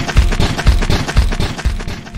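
Cartoon digging sound effect: a rapid flurry of shovel scrapes and thuds, layered over background music.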